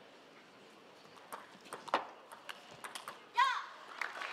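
Table tennis rally: a quick series of sharp clicks from the celluloid ball striking the bats and the table, a few a second, then a short high-pitched shout near the end.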